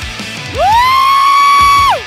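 Loud J-rock music. One high note slides up about half a second in, holds steady for over a second, and drops away just before the end.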